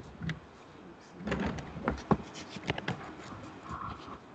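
A laptop being picked up and moved, heard through a video call: a single click, then a run of knocks and clatters from handling it over a couple of seconds.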